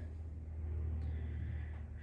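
A steady low hum with a faint, even background noise and no distinct events.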